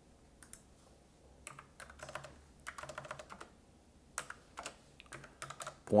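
Typing on a computer keyboard: short runs of sharp key clicks with pauses between them, as a number is keyed in.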